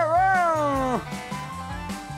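A drawn-out, meow-like cry that rises and then falls in pitch, lasting about a second, over background music with a steady bass line.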